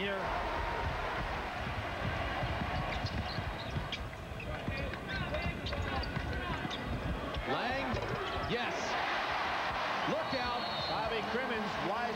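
A basketball being dribbled on a hardwood court during live play, under steady arena crowd noise with scattered shouts.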